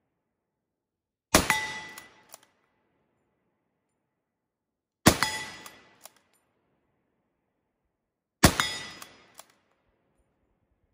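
Gewehr 98 bolt-action rifle in 7.92×57mm Mauser firing three shots, spaced about three and a half seconds apart. Each is a sharp crack with a ringing, echoing tail, and a short click follows about a second after each shot.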